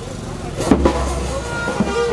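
Motorbike street traffic noise, then from about halfway in, ringing drum and percussion strikes over a steady low hum as traditional funeral music starts. A held wind-instrument note joins near the end.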